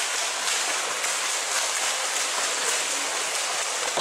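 Swimmers' arm strokes and kicks splashing in a swimming pool: a steady, irregular splashing of water.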